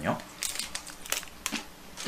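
A crunchy chocolate-coated biscuit (Lotte Binch) being bitten and chewed close to the microphone, a few short crisp crunches.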